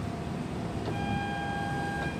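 1857 Hill & Son pipe organ: a click of the key action about a second in, then a single high note held steady for about a second, sounded on the principal stop just named.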